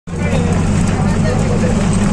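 Bus driving along a road, heard from inside the passenger cabin: a loud, steady low engine and road drone, with faint voices in the background.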